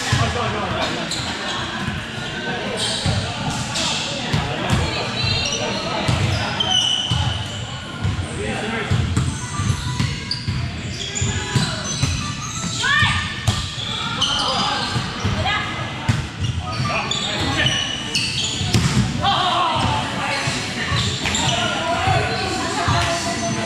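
A volleyball being struck and bouncing off a hard gym floor in repeated sharp knocks during play, with players' voices calling around it.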